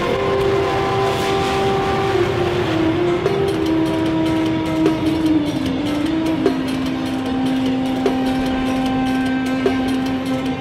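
Long freight train rolling past: a steady rumble of wheels on rail, with a held tone that slowly steps down in pitch and a sharp click about every second and a half.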